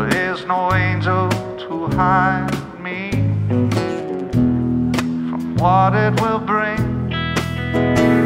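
Live alt-country band playing an instrumental break: an electric guitar plays a lead line of wavering, bent notes over bass and steady drum hits.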